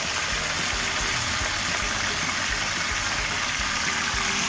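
Okra sizzling steadily as it fries in oil in a pan.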